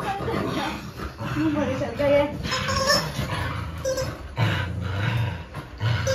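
A dog making short vocal sounds while tugging at a toy in play, low and rumbling about two-thirds of the way through.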